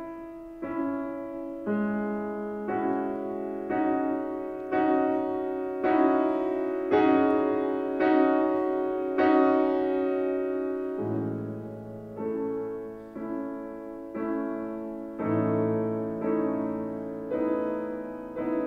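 Steinway grand piano playing slow chords, about one a second, each ringing and fading before the next. Deeper bass notes join about eleven seconds in.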